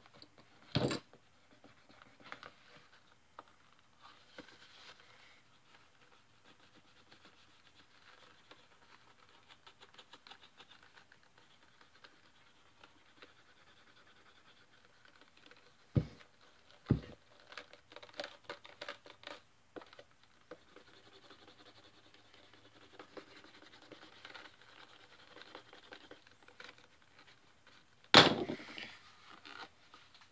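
Faint scraping and rubbing of a hand tool worked over the stitched toe plug of a leather holster. It is broken by a sharp knock about a second in, two sharp knocks a second apart around the middle, and a louder knock near the end.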